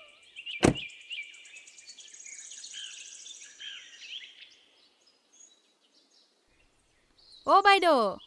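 Faint bird chirps and a fine high trill in the background, with a single sharp knock under a second in. Near the end a person's voice cries out in a drawn-out, wavering call.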